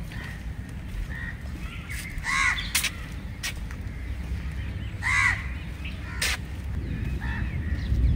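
A crow cawing twice, about three seconds apart, each call followed by a sharp click, over a steady low rumble.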